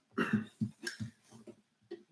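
A few faint, short knocks and rubs from handling an acoustic guitar as the bridge saddle is pressed into its slot over an under-saddle piezo pickup.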